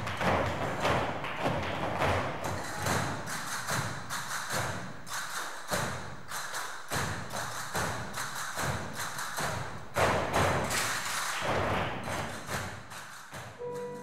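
A group of Spanish-dance students playing castanets in unison: quick runs of sharp clicks, mixed with dull thuds of footwork on the studio floor.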